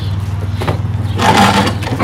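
Plastic bags and cardboard rustling as parts are rummaged out of a shipping box, loudest in a short burst a little past a second in. A steady low hum runs underneath.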